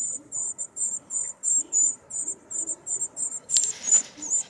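High, thin begging calls of a northern cardinal fledgling, repeated steadily about four times a second. Near the end there is a brief louder scuff of noise.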